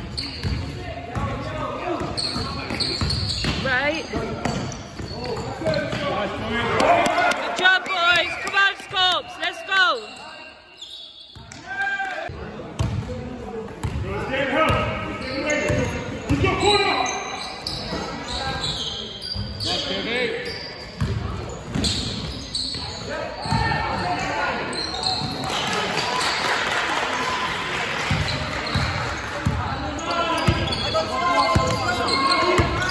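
Basketball game in an echoing sports hall: the ball bouncing as it is dribbled on the wooden floor, mixed with indistinct shouts and voices from players and spectators. Sound dips briefly about ten seconds in.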